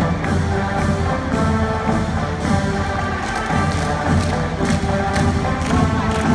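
Military brass band music, sustained brass chords over a steady drum beat.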